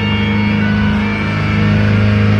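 Live heavy metal band playing through a loud PA, with the distorted guitars and bass holding a long, low chord.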